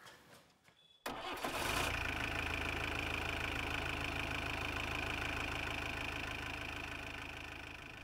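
A vehicle engine starting about a second in, with a short burst as it catches, then running steadily and easing off slightly toward the end.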